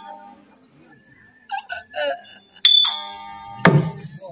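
A sustained harmonium chord dies away, a brief voice is heard, then small hand cymbals are struck twice and ring on, and a single heavy drum stroke lands near the end: the accompaniment of a Tamil street-theatre ensemble.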